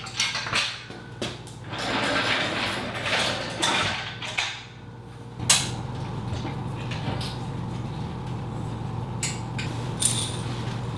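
Steel tubing of a metal storage-rack frame being handled as it is stood upright: a run of clanks and knocks with scraping and rubbing, then one loud knock about five and a half seconds in as the frame is set down, followed by a steady low hum.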